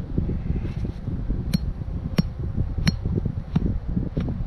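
A metal hand tool clinking sharply four times, about 0.7 s apart, while dirt is dug out for a trap set, over a steady rumble of wind on the microphone.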